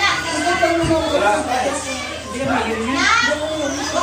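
Several voices of adults and children talking over one another at the same time; no single speaker stands out.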